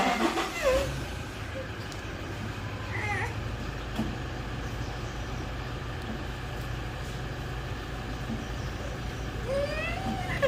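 A steady low motor drone, like an engine running, with faint steady tones above it. A short voice sounds at the start, and a brief high rising-and-falling call about three seconds in.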